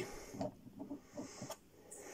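Faint handling noises of a plastic toy helicopter being let go of on a wooden table, with one small sharp click about one and a half seconds in.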